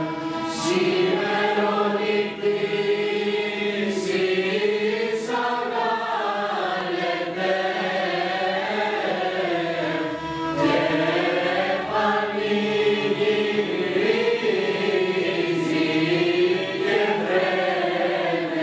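Mixed youth choir singing Greek Christmas carols (kalanda) as one melodic line that rises and falls smoothly, with a traditional instrumental ensemble accompanying.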